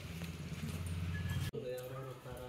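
A low steady hum, then an abrupt cut about one and a half seconds in to a high-pitched voice.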